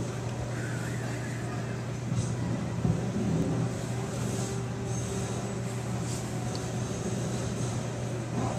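A steady low hum with a faint wash of background noise.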